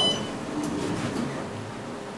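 Otis elevator's signal chime sounding once: a single short, high electronic beep, the elevator's arrival signal at the floor.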